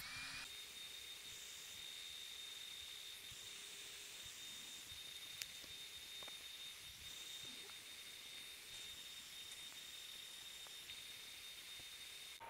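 LaserPecker 4 laser engraver at work marking a coloured-aluminium card: a faint, steady high-pitched whine over a low hiss.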